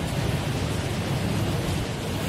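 A steady rushing noise with a low hum beneath it.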